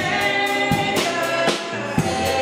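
Live church worship music: a woman singing lead over a band with a regular drum beat.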